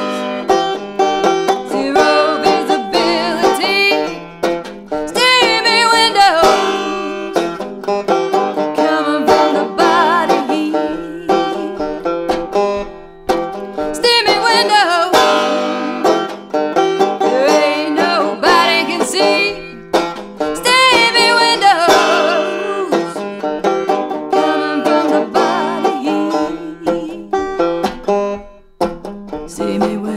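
Five-string resonator banjo playing a solo instrumental break: a fast, continuous stream of picked notes, some sliding in pitch. The player calls the banjo out of tune.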